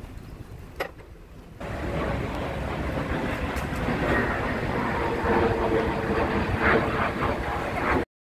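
Outdoor street ambience: a steady wash of passing traffic with indistinct voices, which comes in abruptly about a second and a half in after a quieter stretch.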